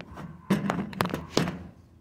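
Three sharp knocks about half a second apart, with duller handling noise between them, as the camera is set down and adjusted on the table.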